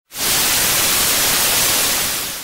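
Television static: a loud, steady hiss of white noise that starts suddenly just after the beginning.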